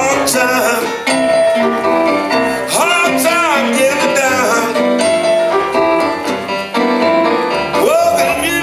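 A small live band playing a song on electric keyboard, acoustic guitar and electric bass guitar, with a voice singing over it.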